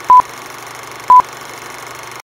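Film-leader countdown sound effect: two short, loud, high beeps a second apart, one for each number counted down. Under them runs a steady hiss and low hum like an old film soundtrack.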